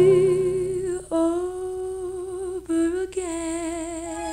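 Closing bars of a slow vocal ballad: a melody without words, held on long notes with vibrato, broken into short phrases about a second in and again near three seconds in.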